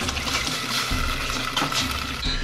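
Cornstarch-and-water slurry poured from a plastic cup into a steel pot of sauce: a steady pouring, splashing liquid sound, used to thicken the sauce.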